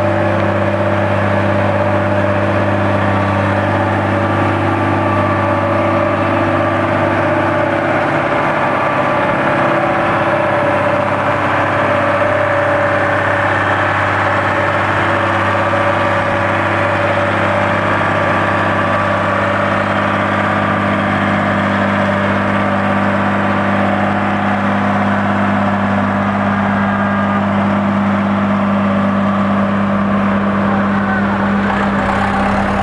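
Diesel engine of a Dynapac single-drum road roller running steadily at constant speed, a continuous hum that barely changes.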